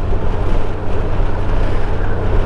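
Steady wind and road rumble of a Honda Gold Wing GL1800 motorcycle ride at speed, picked up by a helmet-mounted microphone, in a short pause between the rider's words.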